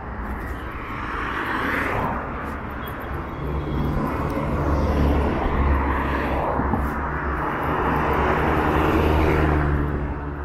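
City road traffic going by: the tyre and engine noise of passing cars and a bus, with a low engine drone that builds about halfway through and stays loudest toward the end.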